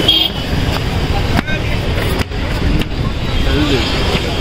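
Busy outdoor background at a crowded night market: a steady low rumble with voices talking nearby and a few sharp knocks.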